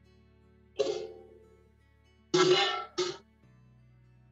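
A person coughing: one cough about a second in, then a longer cough and a short one near the end, over quiet background music.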